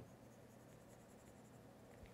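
Very faint scratching of a stylus on a tablet's glass screen as a highlight is shaded in, over near silence.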